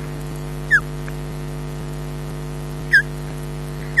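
A bird's short, high, downward-slurred whistled call, given three times, over a steady electrical hum.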